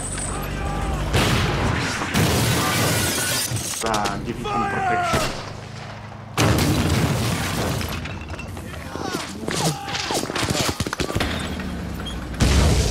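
Battle soundtrack of a war drama: crashes and shattering debris amid combat noise, with men's voices shouting twice, about four seconds in and again near ten seconds.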